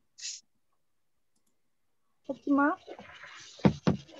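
Video-call audio: a short hiss, then about two seconds of complete silence, then a participant's microphone opens onto background noise, a voice and a few sharp clicks or knocks.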